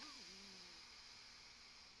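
A long, steady inhale through the left nostril with the right one held shut, a faint even hiss of breath: the deep inhale of Sudarshan Chakra Kriya breathing.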